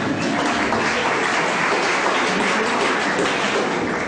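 Audience applauding: a dense, steady patter of many hands clapping.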